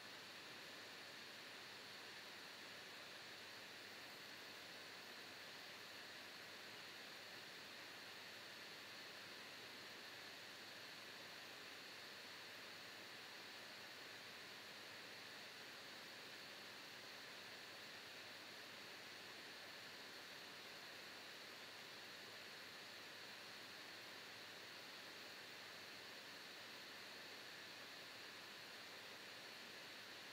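Near silence: a steady, faint hiss of microphone and room noise.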